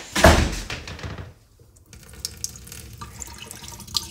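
Kitchen mixer tap running a weak, sputtering trickle into a stainless-steel sink, with faint pops, as water comes back through a drained system and the pressure has not yet built. A loud burst of noise comes in the first half-second, before the flow settles.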